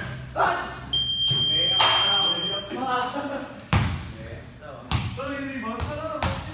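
A basketball bouncing and hitting hard surfaces in a large echoing room, about five sharp thuds spread through, amid players' shouting voices. A steady high-pitched beep sounds for about two seconds starting about a second in.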